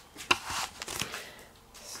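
Handling noise as a phone camera is picked up and moved: a few sharp clicks and rustles in the first second, then quieter rubbing.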